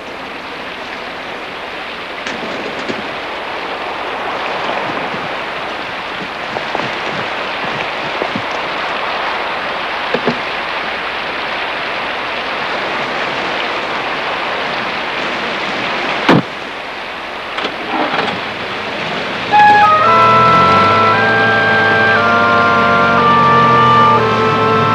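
Steady rain falling, with one sharp knock about two-thirds of the way through and a few small knocks after it. Suspense music of held, overlapping tones comes in near the end and is louder than the rain.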